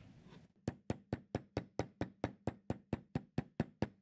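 Metal-headed hammer tapping quickly and evenly along the stitched edge of a leather wallet laid on a bench block, about four or five light knocks a second, starting about half a second in. The tapping sets the hand stitches flat into the leather.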